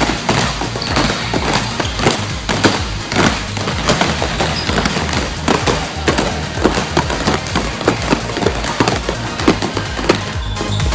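Several basketballs dribbled fast on a gym court, many quick overlapping bounces, as players work two balls at once. Background music with a steady beat plays underneath.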